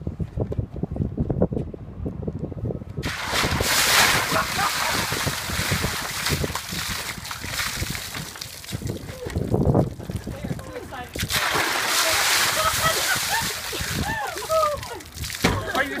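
Ice water splashing and sloshing in a plastic barrel as a person sits down in it and more water comes over her. Loud, rushing splashing starts about three seconds in and goes on in long stretches.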